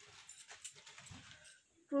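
Faint rustling and handling of cloth as a silk saree is pulled out and unfolded, with a few small clicks. It stops briefly just before a voice starts.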